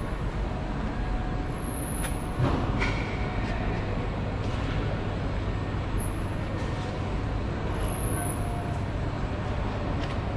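Steady hangar background noise: a continuous rumble and hiss with a low hum, and a few knocks and clatters about two to three seconds in.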